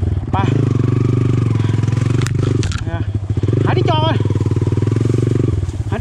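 Dirt bike engine running at low revs, a steady rapid pulsing, as the bike moves slowly along a narrow trail; it eases off briefly about halfway through and again near the end.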